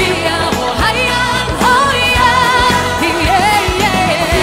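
Live Chinese pop song: a lead melody with vibrato over a full band and a steady beat.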